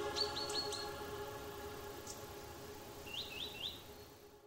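Small birds chirping in short runs of quick rising notes: four in quick succession near the start and three more near the end, over a steady held chord.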